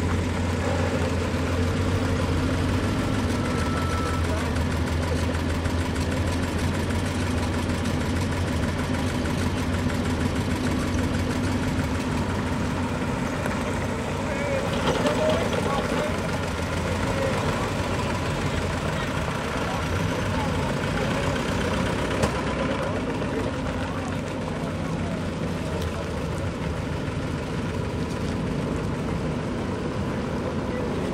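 Old military jeeps and trucks driving slowly past in a convoy and idling in a queue, their engines running steadily at low revs.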